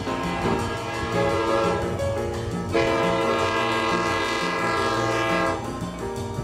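Air horn of an approaching commuter train, a multi-note chord sounding throughout, with a louder long blast from about three seconds in that fades just before the end.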